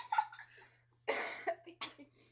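A person coughs: a harsh burst about a second in, then a second, shorter one near the end.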